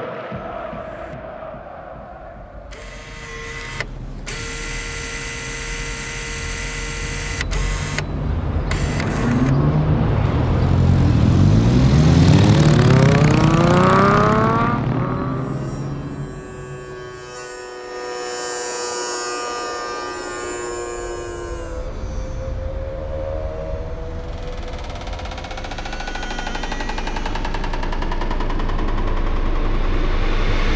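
Layered sound-design score for an animation: held tones over a low rumble, with a cluster of rising pitch glides that swells to the loudest point about halfway through and falls away, then steady held tones building slowly again toward the end.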